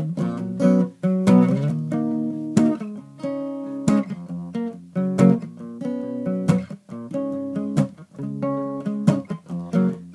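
Acoustic guitar strummed, playing a song's instrumental intro: sharp strokes each ringing on as a chord, with the chords changing every second or so.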